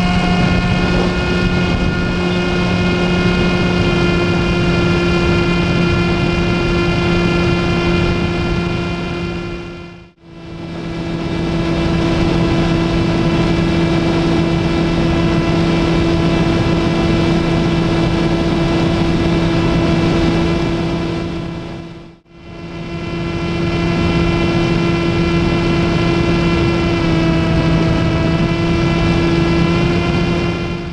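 Brushless electric motor and 10x7 propeller of a 1.8 m foam FPV plane, heard from the camera on board, holding one steady pitch under a rush of wind noise. The sound fades almost to nothing and back twice, about ten and twenty-two seconds in.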